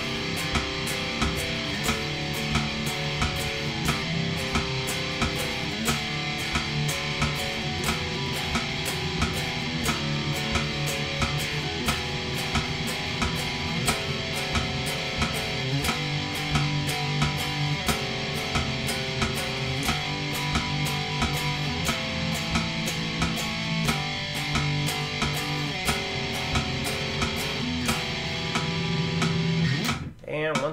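Electric guitar playing a chord-based riff in steady eighth notes, the chords changing about every two seconds, along with an even metronome click at 90 beats per minute.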